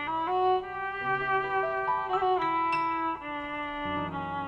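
A bowed string instrument plays a sustained, legato tango melody, the notes moving step by step, over low accompanying notes from the band.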